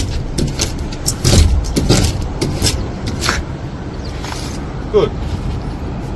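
Long-handled razor scraper blade pushed across window glass to peel off vinyl sheet lettering: a quick series of short scraping strokes that die away after about three seconds.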